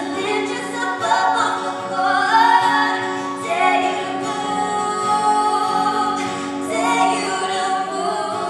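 Female voices singing a song together in harmony over a strummed acoustic guitar, amplified through a PA system.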